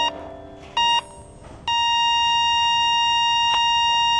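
Electronic patient-monitor beeps: two short beeps under a second apart, then one long unbroken tone from a little before halfway through, the monitor's flatline.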